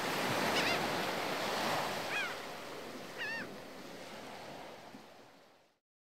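Ocean surf washing steadily, with three short bird calls about half a second, two seconds and three seconds in; the sound fades out just before the end.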